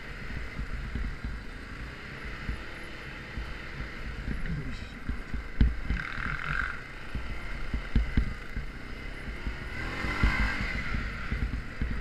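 An ATV engine running under way on a snowy trail, heard from a camera mounted on the quad, with a low rumble and several knocks as it jolts over the bumps; the loudest knock comes about five and a half seconds in.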